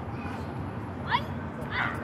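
Two short high-pitched cries over steady outdoor background noise. The first, about a second in, is a quick rising yelp and the loudest sound. The second is a brief cry just before the end.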